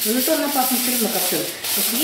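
A person talking: speech that the transcript did not catch.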